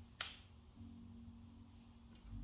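A single sharp pop near the start: a joint cracking as the hips rotate in a circle, with the hip and knee joints popping.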